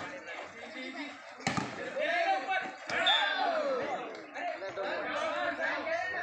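Two sharp smacks of a volleyball being struck, about a second and a half apart, amid loud shouting voices.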